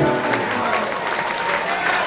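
Audience applauding and cheering at the end of an acoustic and electric guitar song, while the final guitar chord dies away within the first second.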